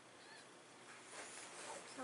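Faint, high mewing squeaks of a newborn kitten, about two days old.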